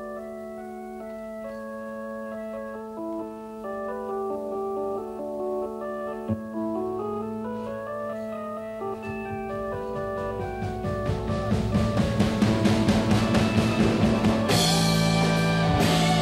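Hammond organ playing the slow opening chords of a rock arrangement over a held low note. From about halfway a mallet roll on the drums and cymbals swells louder, and near the end the full band (drums and bass guitar) comes in.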